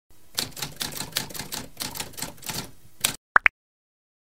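Typewriter sound effect: a run of about a dozen key clacks at roughly four to five a second, ending in two quick high pings.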